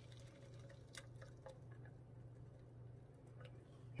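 Near silence: low steady room hum with a few faint ticks about a second in.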